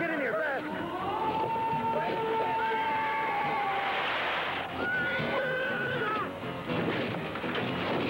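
Dramatic film soundtrack: long held, wailing high notes over a dense rumbling mix, with wavering cries at the start.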